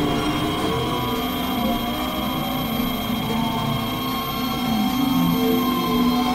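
Layered experimental electronic drone music: several sustained tones sound at once, some sliding or stepping in pitch, over a noisy haze.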